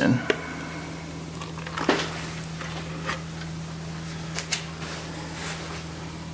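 A steady low hum with a few soft, short knocks of plastic tubs being handled as clear epoxy resin is poured slowly from one tub into another on a scale; the thick resin itself makes little sound.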